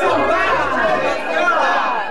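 Many voices talking and calling out over one another, a congregation all speaking at once, with a woman's voice among them.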